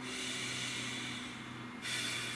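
A person breathing slowly through the nose, a soft hiss that eases off past the middle and picks up again near the end, over a faint steady low hum.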